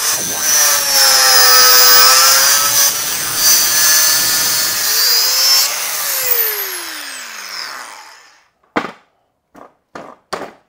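Electric angle grinder running against a metal tube held in a vise, its whine dipping in pitch under load and recovering. About six seconds in it is switched off and winds down in a falling whine over about two seconds, followed by a few knocks as it is set down on the bench.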